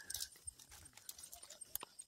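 Faint footsteps of people walking on a dirt path: a few soft, irregular scuffs and clicks.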